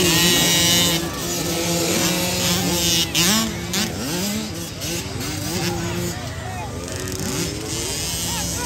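Small 50/65cc motocross bikes racing, their engines revving up and down, loudest as one passes close in the first second. Voices of spectators are talking and calling out over the engines.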